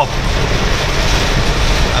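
Heavy rain pouring onto a car's windshield and roof, a steady loud hiss, over the low rumble of the engine and tyres on the wet road, heard from inside the cabin.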